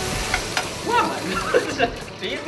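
Food sizzling as it is stir-fried in a wok over a high gas flame. The hiss drops away near the end.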